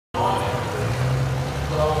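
Diesel pickup truck engine running with a steady low rumble, heard from across the track, with people's voices over it.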